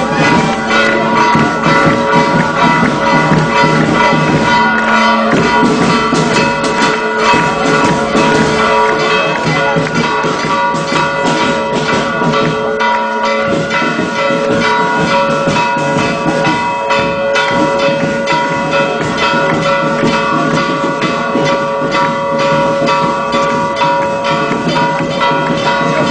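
Church bells ringing continuously in a dense, festive peal: rapid strokes over overlapping, sustained ringing tones.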